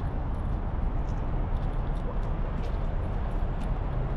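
Steady outdoor rumble, strongest low down and rising and falling a little, with faint scattered ticks over it.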